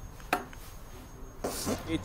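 A short pause in a man's talk into a close-held microphone: a single sharp mouth click about a third of a second in, and a faint intake of breath near the end.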